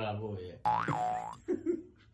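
A cartoon-style 'boing' sound effect: a single springy tone that rises quickly, falls back and levels off, lasting under a second, just after a man's speech stops.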